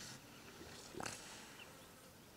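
A single short, sharp animal sound about a second in, against quiet waterside ambience.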